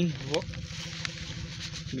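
Battery knapsack sprayer's electric pump running steadily, a low hum with a hiss.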